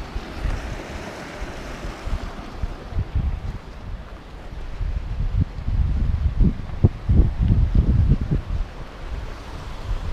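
Wind buffeting the microphone in irregular gusts, strongest in the second half.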